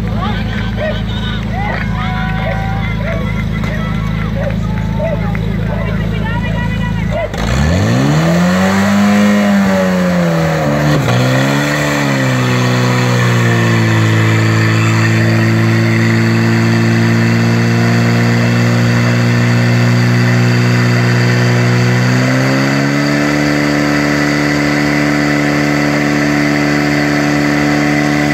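Portable fire pump engine idling, then revved up sharply about seven seconds in, its pitch swinging up and down twice before settling into a steady high run as it pumps water through the hoses to the spray targets. Near the end it climbs to a still higher steady pitch. Voices shout over the idle before the rev-up.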